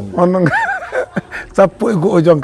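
Men's voices talking, broken by short chuckling laughter.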